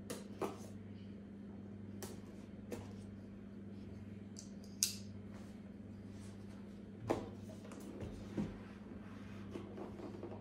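A cardboard product box being handled and opened by hand: scattered short scrapes, taps and rustles of the cardboard, one sharper scrape about five seconds in. A steady low electrical hum runs underneath.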